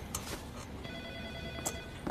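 A faint electronic ringing tone, a rapid trill held for about a second, starting about a second in. It sits over quiet room tone with a few light taps.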